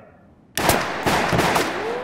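Several pistol shots in quick succession starting about half a second in, mixed with the noise of bullets striking a brick pillar, fading out toward the end.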